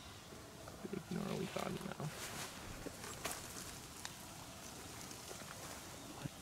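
Quiet outdoor stillness with a brief low, muttered voice about a second in and a few faint ticks and rustles later on.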